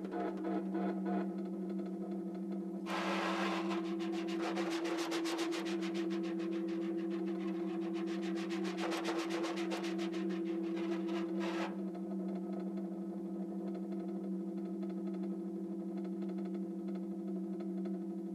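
Electronically prepared snare drum holding a steady low two-tone drone. A dense, fizzing snare-wire buzz joins it about three seconds in and cuts off about twelve seconds in, leaving the drone alone.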